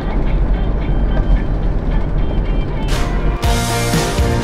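Nepali music playing on a car's stereo over the steady low rumble of the car driving, heard inside the cabin. About three seconds in there is a short hiss, after which the music comes through clearer.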